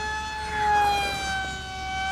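Electric RC plane's 2400 kV brushless motor spinning a 6x5.5 propeller on a 4S lipo pack, a steady high-pitched whine as it flies fast overhead. It swells in loudness and sags slightly in pitch.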